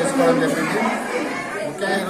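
Speech only: a man talking in Telugu, with other people's chatter behind him.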